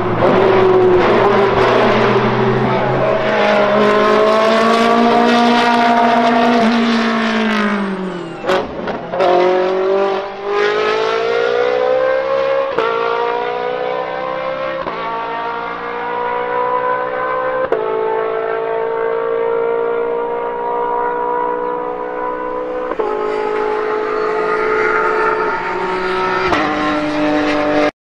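Race car engines at high revs, a Ferrari 458 GT3's V8 among them, the pitch climbing and breaking off at each gear change. About eight seconds in, the pitch falls steeply and the level dips briefly. The engines then climb again through several more upshifts.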